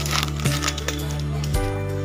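Background music: sustained bass and chord notes, changing about one and a half seconds in, over light clinking percussion.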